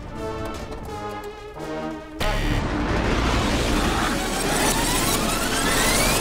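Cartoon soundtrack: a few held music notes, then about two seconds in a loud rushing sound effect with a low rumble cuts in, and a whistle climbs steadily in pitch over the last two seconds.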